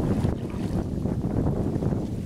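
A small fishing boat under way on the water: a steady low noise, with wind buffeting the microphone.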